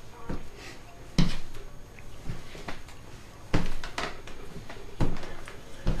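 Footfalls of walking lunges landing on the floor: a few scattered dull thumps, irregular and a second or more apart.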